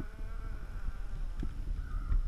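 Week-old yellow Labrador puppy whining: a thin, held whimper that fades out about a second in, then a short higher squeak near the end, over a low rumble.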